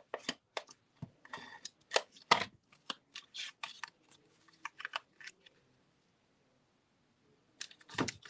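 Cardstock and paper pieces being handled on a tabletop: a run of short paper rustles, slides and light taps that stops after about five seconds.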